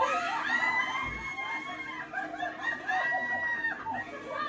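A woman screaming in fright, long high-pitched shrieks with a short break near the middle, heard as the playback of a filmed clip.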